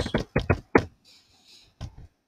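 Computer keyboard keystrokes: a quick run of about six key strikes in the first second, then a pause and one more strike near the end.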